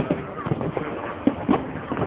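Fireworks shells bursting in the distance, heard as an irregular run of dull thumps, about five in two seconds, with the two near the middle the loudest, over a crowd talking.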